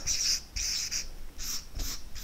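Felt-tip marker writing on a paper flip chart: about four short, high-pitched scratching strokes as letters are written.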